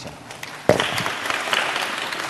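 Audience applause, many hands clapping, starting suddenly about two-thirds of a second in and carrying on steadily.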